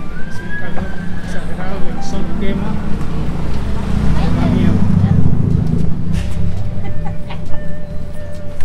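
Busy street-market sound: several people's voices over music from loudspeakers, with car traffic.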